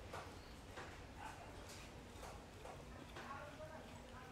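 Faint, light ticks and scrapes of a metal spoon working into a steamed pumpkin on a plate, coming every half second or so.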